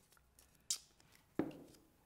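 Two short, sharp clicks of paper being handled and set down on a tabletop, under a second apart, the second the louder.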